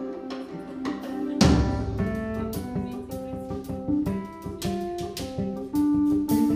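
Live jazz band playing: guitar notes over drum kit and keyboards, with a heavy drum hit about one and a half seconds in.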